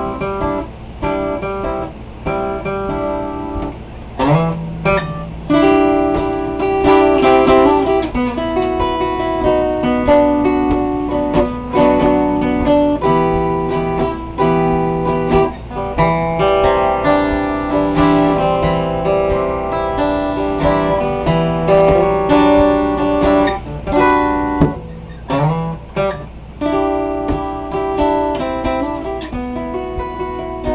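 Acoustic guitar played solo, picking melody notes over chords, without singing.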